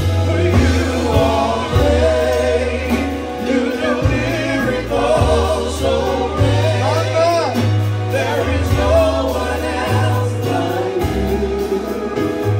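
Live gospel praise song: women singing into microphones, backed by keyboard with sustained low bass notes and a drum kit keeping a steady beat.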